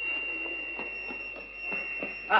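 A steady high-pitched tone, like a buzzer, starts suddenly and holds unbroken, with faint scuffs and knocks of movement beneath it.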